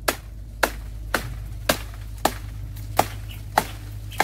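Machete chopping into nipa palm frond stalks: seven sharp strokes, about two a second.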